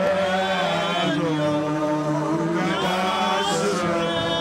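A church congregation singing a slow, chant-like worship song in long held notes that glide between pitches, over a steady low drone.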